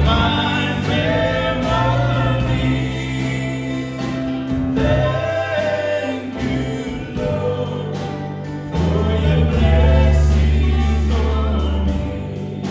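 Live gospel song from a small church band: several voices singing together over keyboard, guitars and sustained bass notes, swelling louder about three-quarters of the way through.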